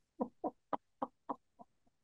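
A woman laughing: a quick run of short 'ha' pulses, about four a second, growing fainter toward the end.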